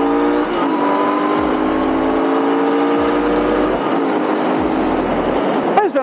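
Royal Enfield Interceptor 650's parallel-twin engine pulling under acceleration, its pitch climbing through the gears, with upshifts about half a second in and again near four seconds, over wind noise.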